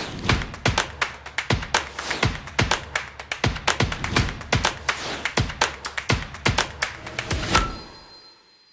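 Short logo-intro music: a quick, even run of percussive taps and thuds that swells near the end and finishes on a bright, ringing chime.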